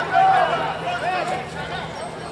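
People talking nearby, with one voice clear through the first second or so, then quieter, indistinct chatter.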